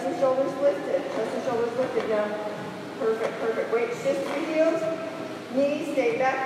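A woman's voice talking, with no other sound standing out.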